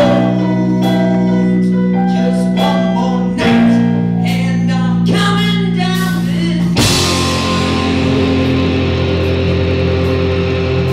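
Live rock band playing a cover song. A quieter passage of held keyboard and bass notes with voice gives way about seven seconds in to the full band crashing in with a cymbal and loud electric guitars.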